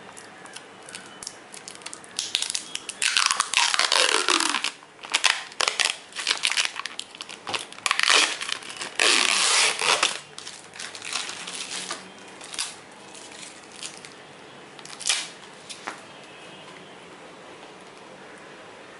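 Clear plastic packaging wrap crinkling and tearing as it is handled and pulled off, in dense bursts for the first half, two of them ending in a falling rip, then a few sparser crackles.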